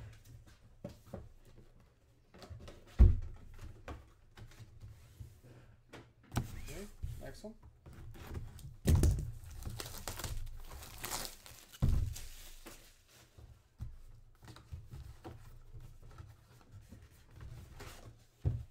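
Cardboard boxes and packaging handled on a table: a sharp thump about three seconds in, then sliding and scraping of cardboard with more thumps around nine and twelve seconds, and light clicks and rustles in between.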